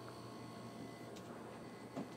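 Quiet room tone with a steady low electrical hum, a faint click a little past halfway, and a soft knock at the very end.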